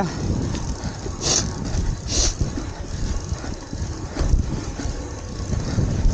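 A Graziella folding bike rumbling and clattering as it rolls fast over a rough dirt and root forest trail. Two short hissing scrapes come about one and two seconds in.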